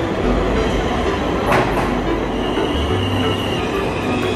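New York City subway train (R line) pulling into the station: a steady rumble of the cars over the rails, with a brief sharp rattle about a second and a half in and a steady high wheel squeal near the end.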